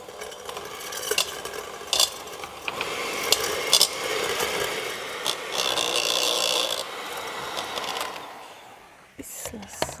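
Electric hand mixer beating quark dough in a stainless steel bowl, the beaters scraping and clicking against the metal. It dies away near the end.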